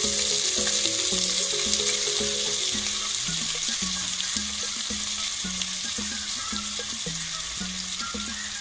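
Chopped onions sizzling in hot oil in a frying pan: a steady, high hiss that gradually eases.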